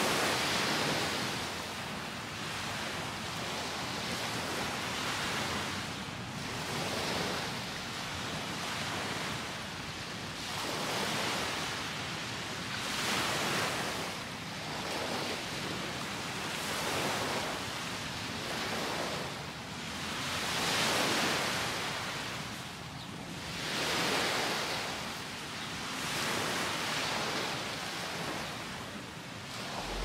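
Small sea waves breaking and washing up a sand-and-pebble beach, the surf swelling and fading every three seconds or so.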